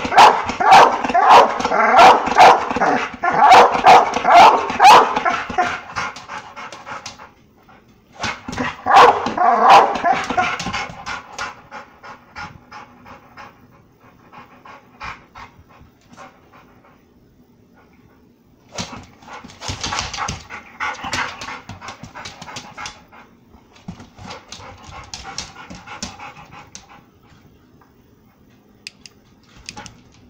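Pit bull barking excitedly in fast, loud runs of barks through the first ten seconds or so, then quieter for several seconds, with shorter, softer bark runs near the end.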